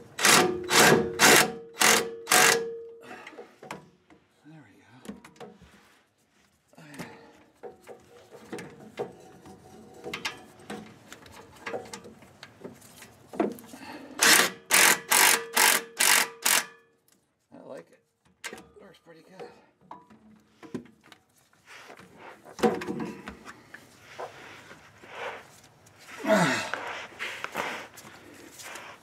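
Power ratchet run in two series of about six short, evenly spaced trigger bursts, each with a steady whine, running down the nuts that hold a Ford 8-inch differential center section to its axle housing. Quieter clicks and knocks of the tool and socket come in between.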